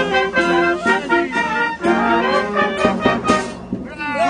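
Town brass band playing a tune, brass instruments holding and changing notes over drum hits.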